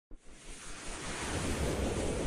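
Rushing whoosh sound effect, a noisy swell like wind or surf, rising from silence over the first second and a half and then holding steady.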